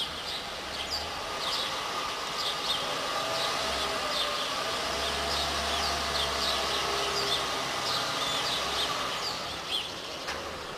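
Small birds chirping over and over, with a car engine running at low revs as the car creeps back and forth. The engine note swells and wavers in pitch through the middle.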